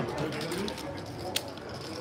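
Low murmur of voices around a poker table, with one sharp click about a second and a half in.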